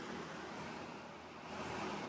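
Faint, steady background noise with a low hum, and no distinct event.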